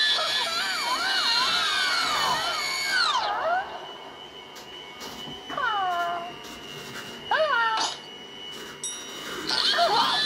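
Cartoon characters' wordless, high-pitched whimpering and wailing voices played through a screen's speaker: long wavering, gliding cries for the first few seconds, then short falling cries a few seconds apart.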